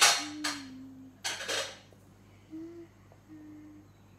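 A person humming a few short, low, steady notes with closed lips. In the first two seconds there are three short, loud swishes of noise, and these are the loudest sounds.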